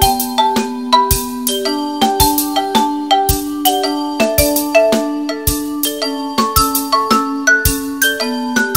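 A percussion quartet of pitched mallet instruments plays several interlocking parts. Ringing struck notes sit over a low accent that falls about once a second.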